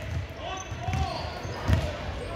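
A basketball bouncing on a hardwood gym floor, about three thumps with the last the loudest near the end, echoing in a large hall.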